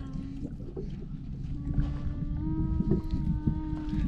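Low wind and water rumble around a small boat, with a faint steady motor drone in the background whose pitch climbs slightly, and a few light clicks of cast-net line being handled.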